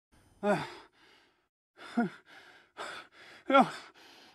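A man breathing hard with exertion: three falling, groaning exhales spaced about one and a half seconds apart, with rasping breaths in between.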